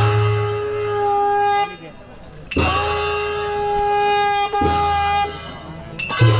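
Traditional wind instruments of a festival band sounding long, loud held notes in two blasts. The first breaks off a little under two seconds in. The second starts about two and a half seconds in and dies away near the end.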